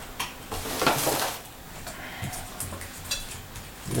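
Light clicks and clatter of small hard lamp-kit parts and plastic packaging being handled, with a short rustle about a second in.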